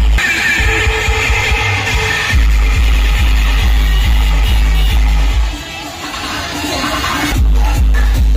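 Loud electronic dance music with a heavy bass beat played through a DJ sound system. The bass cuts out for about two seconds past the middle, then comes back in.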